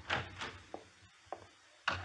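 Radio-drama sound effects of light wooden taps and a scrape, with a sharper knock near the end.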